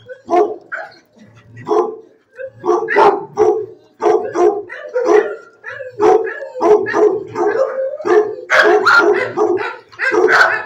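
Dogs barking in a shelter kennel, short barks coming several times a second with a brief lull between about one and two and a half seconds in.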